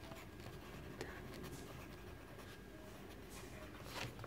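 Pencil writing on a textbook page: faint scratching of the lead on paper, in short strokes as letters are formed.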